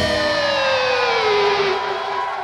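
Electric guitar holding a final sustained note whose pitch slides slowly down, ending the metal song, with the drums already stopped.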